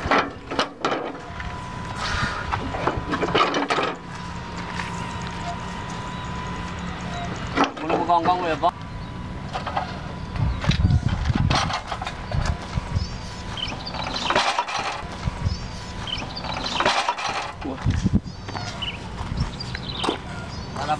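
Mostly people talking, with a few sharp knocks of heavy iron tractor parts being handled near the start.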